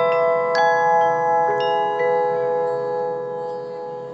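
Front-ensemble mallet percussion playing a soft, sparse passage: a few single struck notes that ring on and overlap, slowly fading toward the end.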